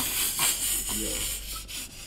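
Rubbing and rustling handling noise over a video-call connection, as a phone's microphone is pressed against clothing, with faint voices underneath about half a second to a second in.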